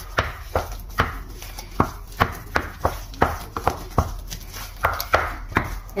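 Wooden spoon stirring mashed potato and corned beef in a stainless steel pot, knocking against the pot about three times a second in an even rhythm.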